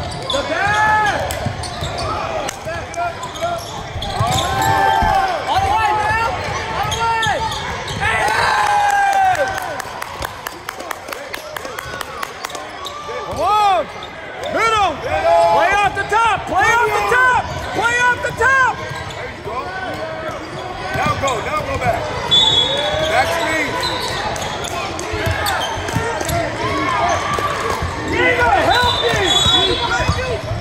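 Basketball game play on a hardwood court: a ball dribbled and bouncing on the wooden floor, with short chirping sneaker squeaks as players cut and stop, and voices calling out in the hall.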